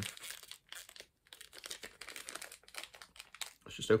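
A small pin packet in a tough bag being handled, crinkling and rustling in many short, irregular crackles.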